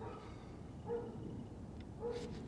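A dog barking faintly, one short bark about a second in.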